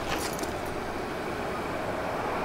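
Steady outdoor background noise, a low rumble with hiss, with no distinct events.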